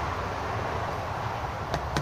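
Steady background noise with a low rumble, and two light clicks a little under half a second apart near the end, as an aluminium beer can is tipped against the neck of a plastic pump sprayer.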